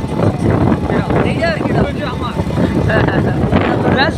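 A motorcycle being ridden along at road speed, with steady engine and wind rumble on the microphone and a voice talking over it in snatches.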